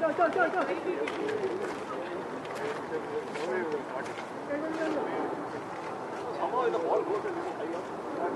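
Several people talking indistinctly at a distance, loudest at the start and again near the end, with a few faint clicks in between.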